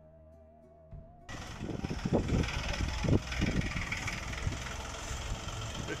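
Soft music for about the first second, then an abrupt cut to the engine of a small farm tractor running as it pulls a loaded flatbed trailer along the street.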